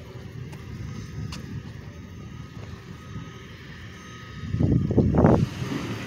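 Low, steady outdoor rumble of street noise, swelling into a louder rush about four and a half seconds in.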